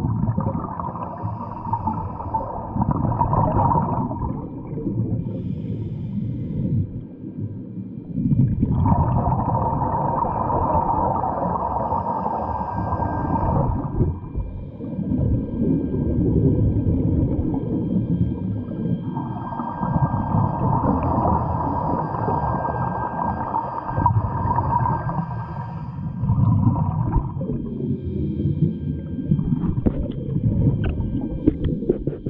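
Scuba regulator breathing heard underwater: three long exhalations of rushing, bubbling noise about ten seconds apart, with quieter inhalations between them.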